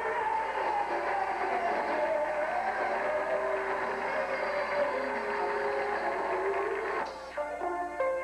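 A woman singing gospel into a microphone over instrumental accompaniment. About seven seconds in, her voice drops out after a brief dip and click, and steady held chords carry on.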